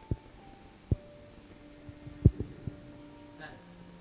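Handling noise from an acoustic guitar and its microphone setup: five or so sharp knocks and thumps, the loudest a little past halfway, with a few guitar strings ringing faintly on after the bumps.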